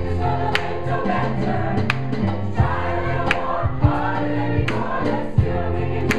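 Mixed choir of men's and women's voices singing in harmony, holding sustained chords. A sharp percussive hit sounds about every second and a half.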